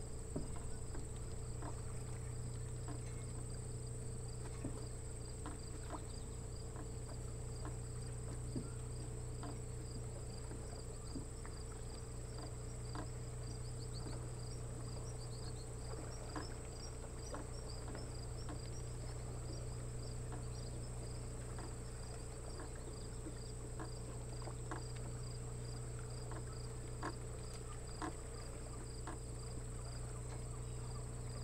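Insects chirping steadily: a continuous high trill with a rapid, evenly repeating high chirp over it. A steady low hum runs underneath, with scattered faint ticks.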